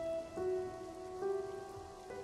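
Quiet background music of held, sustained notes that move to new pitches twice, over a faint steady hiss.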